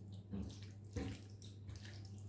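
A hand squishing and turning raw chicken pieces in a wet marinade in a glass bowl: irregular soft wet squelches, the louder ones about a third of a second and a second in, over a steady low hum.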